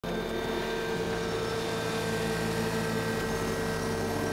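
A steady droning hum with several held tones and a low rumble beneath, unchanging throughout.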